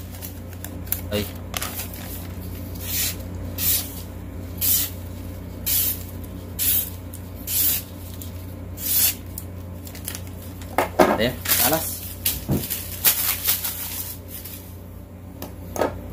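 A hollow-ground straight-razor balisong blade slicing through a sheet of lined paper in a string of about eight quick hissing cuts, roughly a second apart. The paper-slicing sharpness test is followed by a few light clicks as the paper and knife are handled.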